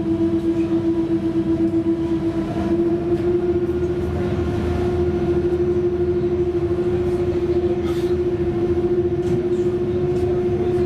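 Ferry's engines running under way: a steady loud hum with a pulsing beat, its pitch stepping up slightly about three seconds in.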